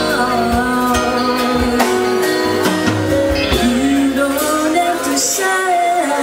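A woman singing long held notes into a handheld microphone, amplified, over instrumental accompaniment with a steady beat.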